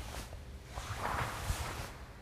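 Cotton karate gi rustling and swishing as the arms cross and swing up into a rising block on the other side, loudest about a second in.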